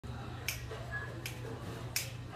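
Finger snaps counting off the tempo before the band starts: three sharp snaps about three-quarters of a second apart, over a faint low room hum.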